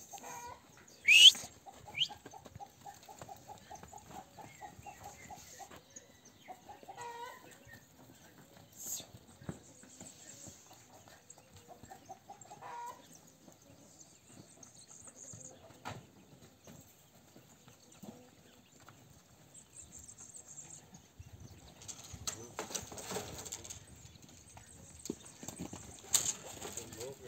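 Faint bird calls, the loudest a short high rising call about a second in, with scattered knocks and a stretch of rustling near the end.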